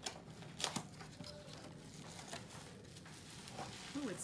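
Cardboard and plastic wrap rustling and crinkling as a small box is opened by hand and its bubble-wrapped contents worked loose, with scattered sharp clicks, the loudest about half a second in.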